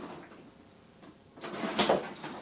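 Cardboard shoe box being handled and set down on a lap: a brief scraping rustle of cardboard about a second and a half in.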